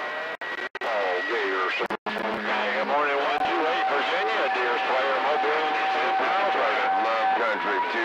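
CB radio receiver on a crowded channel: several stations talking over each other, with steady whistles laid across the voices. One whistle runs through the first two seconds, another from about three seconds to just past seven, and a higher one near the end. The audio drops out briefly a few times in the first two seconds.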